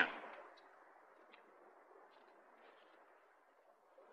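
Near silence: a faint steady hiss of room tone, with a few tiny clicks.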